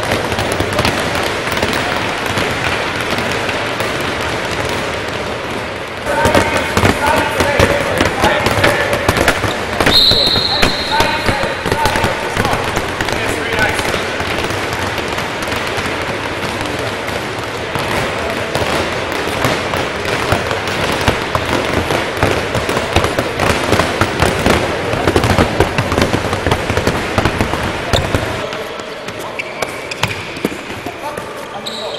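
Several handballs bouncing on a wooden sports-hall floor, many bounces overlapping, mixed with running footsteps and voices.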